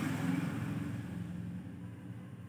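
Quiet room tone: a faint low hum that slowly fades, with no distinct sound event.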